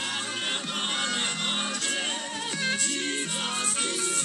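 A song with a singing voice over instruments, playing from the Samsung Galaxy Tab S9's built-in AKG-tuned stereo speakers as a demonstration of their sound.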